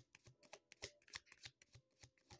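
A deck of tarot cards being shuffled by hand: a faint, irregular run of soft clicks and snaps as the cards slide and riffle together.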